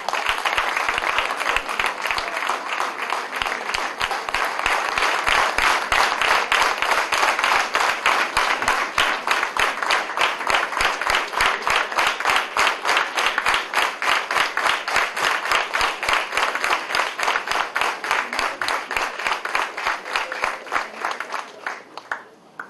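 Audience applauding: many hands clapping in a dense, steady patter that dies away just before the end.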